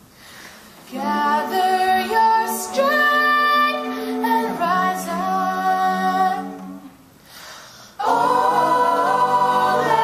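A cappella jazz choir of mixed male and female voices singing close-harmony chords into microphones. After a brief hush at the start, a phrase of held chords comes in about a second in, fades to a lull around seven seconds, and the full group comes back in louder near the end.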